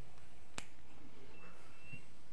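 A single sharp click about half a second in, over quiet room tone, with a faint high steady tone near the end.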